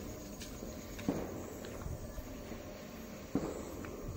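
Footsteps and a suitcase being wheeled and handled on paving, with two dull thumps, one about a second in and one near the end.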